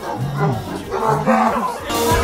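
A man's voice in a few low, drawn-out calls, with music quieter in the background.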